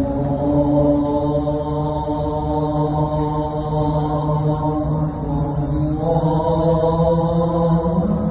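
A muezzin's call to prayer (adhan) over the mosque's loudspeakers: a man's voice holding two long, drawn-out chanted phrases, the second beginning about six seconds in.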